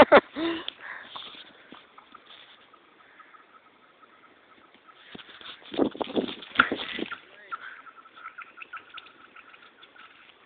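A thrown rock skidding across thin lake ice, the ice answering with a series of high, pinging chirps that come in quick succession over the last few seconds.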